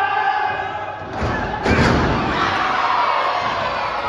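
A wrestler slammed down onto the ring mat: one heavy thud about one and a half seconds in. Crowd voices shout around it.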